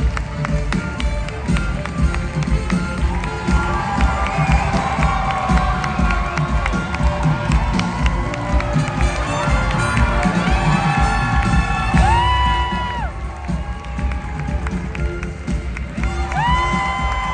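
Live theatre band playing curtain-call music while the audience cheers and claps throughout, with strong held notes about twelve seconds in.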